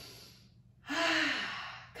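A woman's breathy exhale fading out, then, a little under a second in, a voiced sigh lasting about a second with a slightly falling pitch, while holding a squatting yoga pose.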